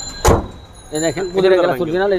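A single loud thump of a car bonnet being pushed shut, with a man talking a second later.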